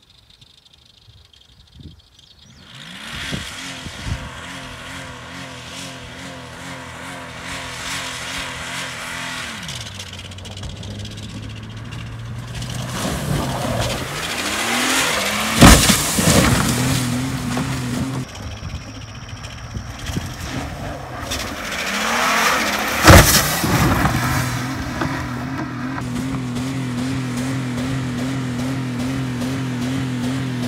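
Driverless Jeep Grand Cherokee with its throttle wedged open by a two-by-four, its engine revving hard and steady from a couple of seconds in. A heavy crash as it lands off the jump about halfway through, a second crash some seven seconds later, and the engine keeps revving after both.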